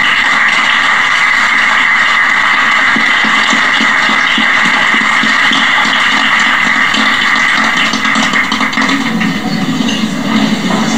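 Audience applauding, starting suddenly as the speech ends and going on steadily.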